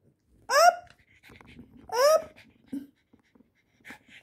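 Cavalier King Charles Spaniel puppy giving two short, high-pitched yips, each rising in pitch, about a second and a half apart, with faint breathing and scuffling between them. She is excited and jumping at a plush toy held out of her reach.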